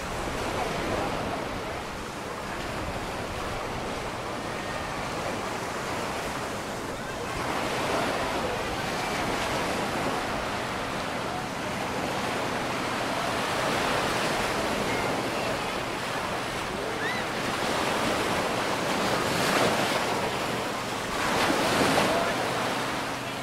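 Small ocean waves breaking and washing up onto a sandy beach, the surf surging louder and easing every few seconds, loudest near the end, with some wind buffeting the microphone.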